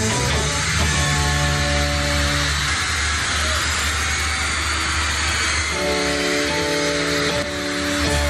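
Live rock band playing an instrumental stretch without singing: electric guitars, bass and drums with held chords, under a steady high wash of noise.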